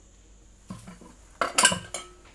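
Kitchen utensils knocking and clinking against a pan: a soft knock about two-thirds of a second in, then a brief cluster of louder clinks around a second and a half in.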